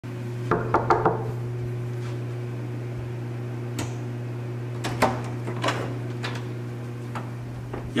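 Steady low electrical hum, with a few sharp clicks and knocks scattered over it: a quick cluster about half a second to a second in, then single ones every second or so.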